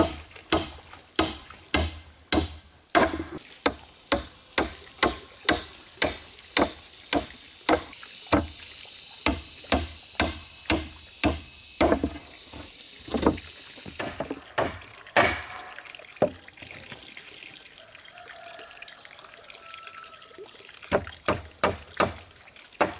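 Hammer nailing wooden planks of a footbridge, sharp strikes about two a second for the first half, then slower with a few seconds' pause, and resuming near the end. Water pouring from a pipe into a pond runs steadily underneath and is plain in the pause.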